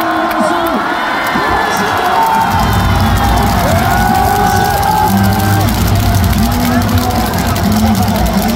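Baseball stadium crowd cheering and shouting, many voices overlapping, with the stadium PA underneath. A low rumble joins about two and a half seconds in.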